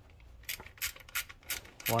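Ratchet wrench with a 13 mm socket clicking as it is swung back and forth, loosening a bolt on the air-conditioning compressor bracket: a string of sharp clicks, about three a second.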